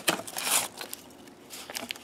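Corrugated cardboard packing rustling and scraping as it is pulled out of a shipping box, in a few short crackly bursts near the start and again near the end.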